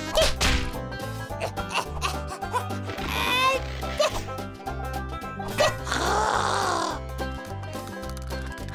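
Cartoon background music with a steady bass line, over comic sound effects of a hatchet being swung and striking a log: a whoosh just after the start, then sharp hits, a warbling glide in the middle and a wavering effect near the end.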